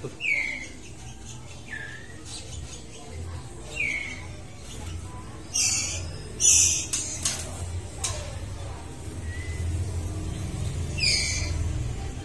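White-rumped shama (murai batu) giving short calls that slide down in pitch every couple of seconds, with two louder, harsher calls around the middle. A steady low hum runs underneath.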